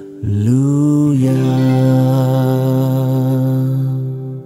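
A man singing one long held note in a low voice. He slides up into it just after the start, holds it steady, and it fades near the end.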